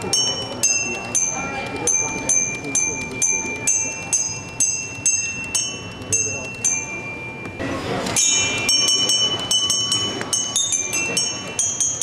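A LEGO Mindstorms RCX music robot's motor-driven mallets striking tuned bars, playing a tune of single bell-like notes, each with a small mechanical tap, about two to three a second. The notes are played from a touch-sensor keyboard. There is a short break about two-thirds of the way in, then the notes come quicker.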